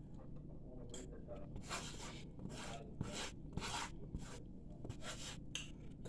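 Metal spoon scraping and scooping food on a paper plate: a series of soft scrapes with a few light clicks.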